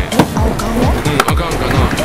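Skateboard wheels and trucks grinding and sliding along a skatepark ledge, with sharp clacks of the board about a fifth of a second in and again a little past one second. Under it runs a hip-hop backing track with a deep, repeating bass beat.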